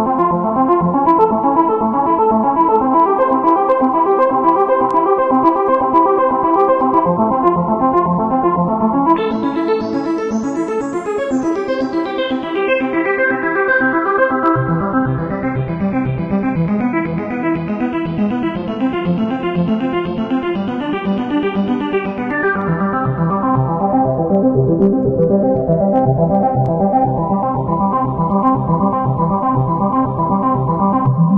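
Korg Nu:Tekt NTS-1 digital synthesizer running a fast repeating arpeggio. Its tone brightens and darkens twice as the filter cutoff is swept, and lower notes join about halfway through.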